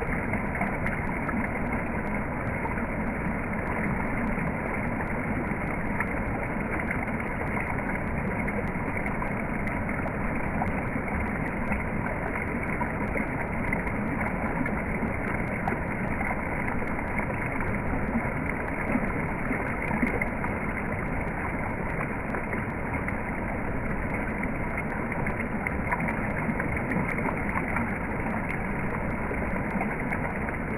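Waterfall rushing steadily, an even wash of water noise with no breaks.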